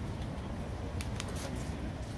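Outdoor street background: a steady low rumble, with a few light taps about a second in from people walking past.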